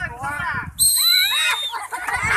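A whistle blown once, a high steady tone lasting under a second, signalling the start of a sack race, with voices of the crowd around it.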